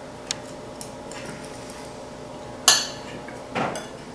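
Knives and forks clinking and scraping against ceramic plates as food is cut: a sharp tick early, a fainter one, and a louder ringing clink just before three seconds in.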